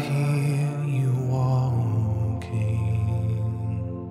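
Slow, spontaneous worship music: a wordless voice singing long held notes with slight vibrato over sustained keyboard chords, in two phrases with a short break about two and a half seconds in.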